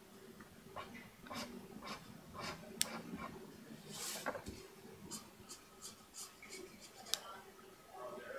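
A pen drawing on paper: short, irregular scratchy strokes, one longer stroke about halfway through, and two sharp clicks.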